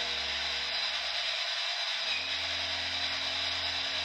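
A steady low drone over a constant hiss; the lowest tone shifts about halfway through. It has the character of an ambient background music bed.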